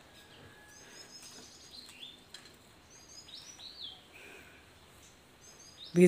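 Birds calling faintly: several short series of high chirps, with a few notes falling in pitch, over quiet outdoor background noise.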